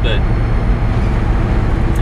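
Steady in-cab drone of a Volvo 780 semi truck's Cummins ISX diesel engine cruising at highway speed, with tyre noise from the wet road.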